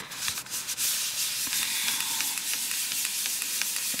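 Fingertips rubbing and pressing a freshly glued cardstock panel flat onto a card: a steady papery rubbing sound.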